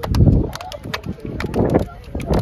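Hand slaps of players high-fiving and clasping hands down a handshake line: a quick, irregular patter of sharp claps. Two louder low rumbles, one at the start and one past the middle, run under the slaps.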